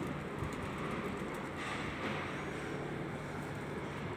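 Steady outdoor background noise with no distinct events, a faint even hiss and hum of the open air around the loft.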